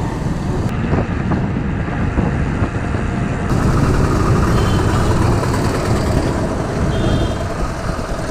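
Steady road-traffic noise from motorcycles, trucks and auto-rickshaws, heard with wind on the microphone of a camera riding on a moving bicycle's handlebar. The sound changes abruptly about a second in and again about halfway through.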